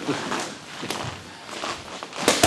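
A boxer's feet stepping and shuffling on a gym mat in a pause between punches on a heavy bag, with one sharp tap about a second in.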